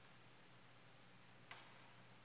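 Near silence over a faint steady low hum, broken by a single light click about one and a half seconds in: an object set down on the altar as it is prepared.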